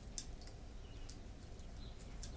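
Faint, sparse clicks of a loop of chainsaw chain being handled and untangled in the hands, over a low steady drone of a distant lawnmower, with a couple of faint bird chirps.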